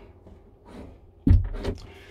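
Lightweight motorhome washroom door being pushed shut: one sharp knock about a second in, followed by a couple of lighter clicks.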